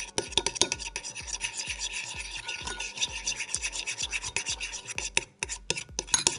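Metal spoon stirring glue and dish soap in a ceramic bowl, scraping the bowl in quick continuous strokes, with a brief pause near the end.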